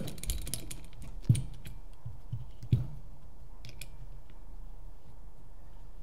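Small clicks and knocks from an Aim Sports H-style aluminum bipod being handled while its mounting clamp is loosened, with two sharper knocks about a second and nearly three seconds in.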